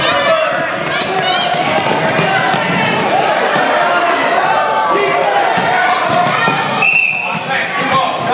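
Basketball bouncing on a hardwood gym floor during play, with many overlapping children's and spectators' voices echoing in the gym. A short high tone sounds about seven seconds in.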